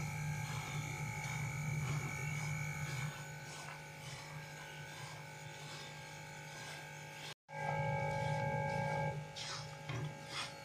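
A wooden spatula stirring and scraping roasted gram flour in ghee in a wok over a steady buzzing hum of several held tones. The sound cuts out completely for a moment about seven seconds in.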